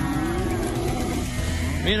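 A herd of dairy cattle mooing: long drawn-out calls that bend slowly in pitch, over a steady low rumble.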